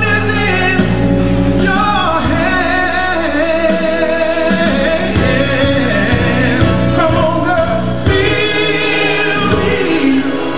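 A man singing into a handheld microphone over instrumental accompaniment with a bass line, holding long, wavering notes.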